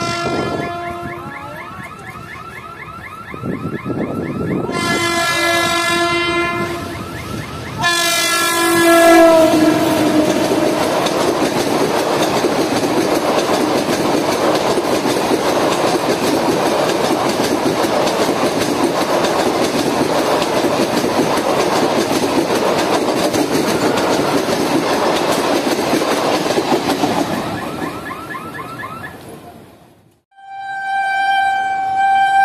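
WAP4 electric locomotive's horn sounding three times: a blast right at the start, a longer one about five seconds in, and a third about eight seconds in that drops in pitch as the locomotive passes close by. Then comes the steady rumble and wheel clatter of its passenger coaches going past, fading out near the end.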